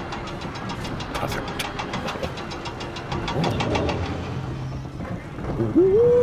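Cartoon roller-coaster car climbing the lift hill: a rapid, even run of clicks, about six a second, over a low rumble. Near the end a short rising vocal 'ooh' is heard.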